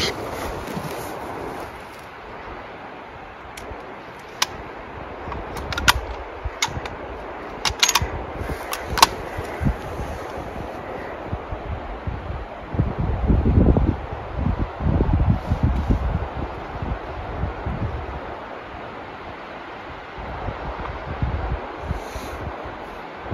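Wind on the microphone and the rustle of clothing and grass, with a few sharp clicks in the first half and stronger low rumbles of wind buffeting a little past the middle.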